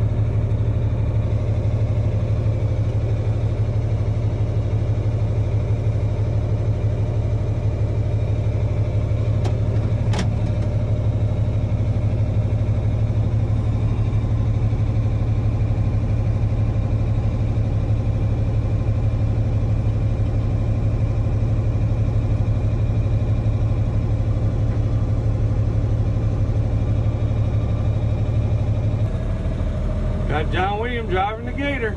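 Tractor diesel engine running steadily, heard from inside the cab, with one short click about ten seconds in; the low hum shifts near the end.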